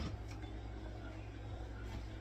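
A steady low hum with faint room noise, and a light click near the end.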